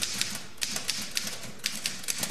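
Manual typewriter being typed on: a quick, irregular run of typebars clacking against the paper.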